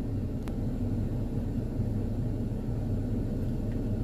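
Car engine idling, heard from inside the cabin as a steady low hum, with one faint click about half a second in.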